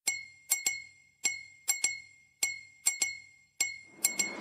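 Bright glass-like clinks, all at the same high pitch, about ten strikes in an uneven rhythm, each ringing briefly and dying away; a chime figure at the opening of a song track.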